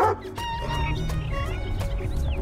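A dog barks once right at the start, then background music carries on with a steady low bass and held tones.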